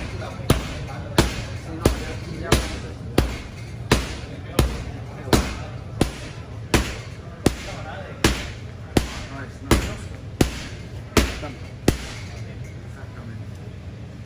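Boxing gloves slamming into a hand-held heavy bag: a steady series of hard single punches, about three every two seconds, some seventeen in all, that stop a couple of seconds before the end.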